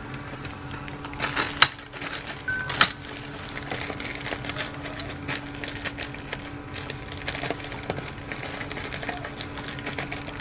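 White plastic poly mailer bag being handled and pressed on a desk, crinkling with many small clicks. A few sharp knocks of things being set down come in the first three seconds, the loudest about a second and a half in.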